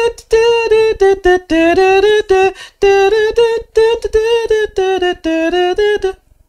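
A man humming or vocalising a tune without words, in a rhythmic run of short, held notes.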